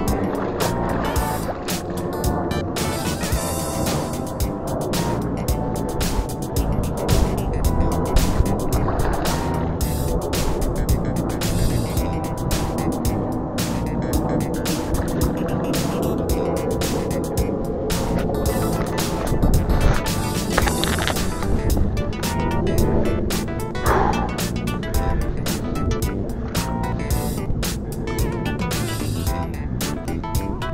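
Background music with held notes and a steady run of beats.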